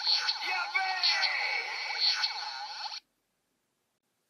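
Bandai DX Build Driver toy belt playing its electronic sound effects through its small speaker: a beat-driven standby tune with a processed voice call over it, cutting off abruptly about three seconds in as the belt's lights go out.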